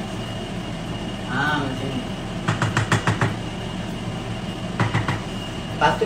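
A cooking utensil knocking and clinking against a stainless-steel saucepan on the hob, in a quick rattling cluster midway and a shorter one near the end, over a steady hum.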